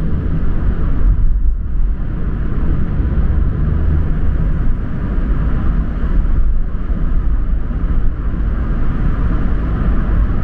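Steady low rumble of a car driving through a road tunnel, heard from inside the cabin: engine and tyre noise on the road surface.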